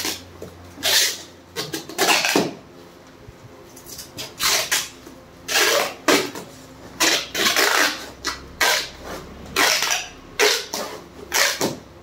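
Brown packing tape being pulled off its roll in a series of short, loud rips, about ten in all, as it is run around and pressed onto corrugated cardboard.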